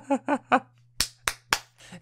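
The tail of a man's laugh, then three sharp clicks about a quarter second apart, about a second in.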